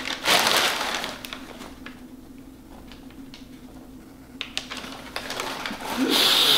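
Paper wrapping rustling and crinkling as it is handled, loudest in a burst about half a second in, then fainter scattered clicks and taps.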